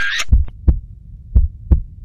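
Heartbeat sound effect: deep, low thumps in two double beats about a second apart, after a short high-pitched tone that cuts off just after the start.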